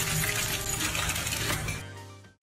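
A rapid, dense clatter of small clicks over background music, fading out near the end.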